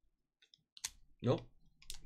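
A few sharp clicks as a utility knife's blade cuts open the end of a foil trading-card pack, the loudest just under a second in.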